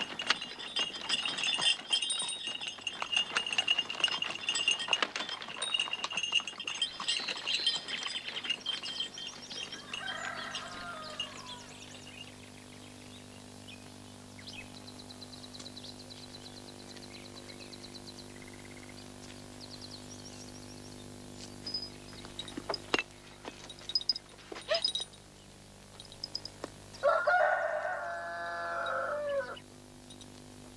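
A horse-drawn cart arrives, its hooves and wheels clattering and its harness clinking for the first several seconds. Then a rooster crows twice, briefly about ten seconds in and again, louder, near the end.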